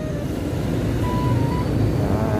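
Steady low rumble of road traffic passing on a city street.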